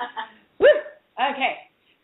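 Three short vocal bursts from a woman, no clear words, heard through a narrow, phone-like line; the loudest is about halfway through and falls in pitch.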